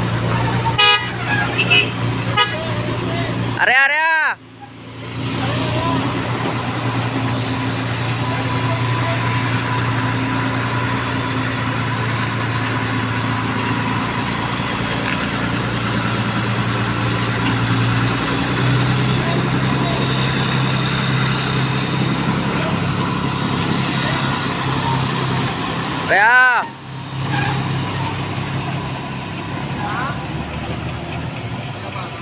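Heavy diesel lifting machinery running steadily, its engine note rising a little about two-thirds of the way through. Two short tooting signals sound over it, about four seconds in and again near the end.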